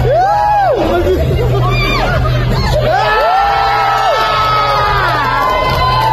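Loud dance music with a steady low beat and a repeating sliding melody line, with a crowd cheering and whooping over it.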